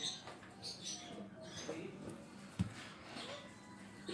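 Quiet room with faint voices in the background and a single soft knock about two and a half seconds in.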